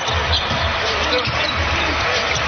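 Basketball dribbling on a hardwood court over arena background music.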